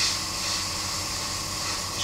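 Airbrush spraying paint: a steady hiss of air.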